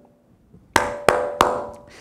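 Three sharp percussive hits, about a third of a second apart, starting about three-quarters of a second in, each ringing out briefly.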